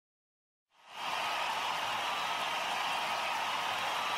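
Silence, then about a second in a steady, even hiss begins and holds unchanged.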